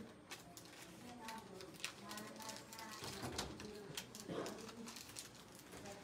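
Faint, indistinct chatter from several people talking at a distance, with scattered light clicks and knocks.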